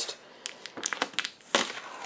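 Clear plastic sheeting and tape crinkling and crackling in quick, irregular little clicks as they are handled and peeled off the aquarium's trim.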